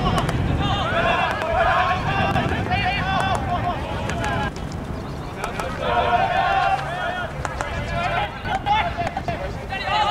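Voices shouting and calling across a field hockey pitch, the words unclear, with a few sharp knocks among them.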